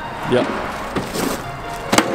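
Wheelbarrows being handled, with knocking and one sharp, loud clank near the end.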